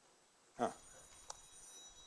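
Mobile phone ringing: a high, steady electronic ringtone that starts about half a second in and keeps going.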